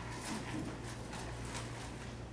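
Papers and envelopes being handled at a table: irregular rustling and light taps several times a second, over a steady low hum.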